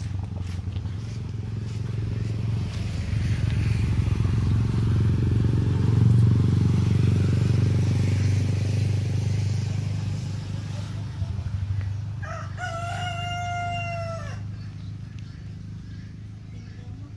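A rooster crows once, about two seconds long, late in the stretch. Under it a low droning rumble builds to its loudest midway and then fades.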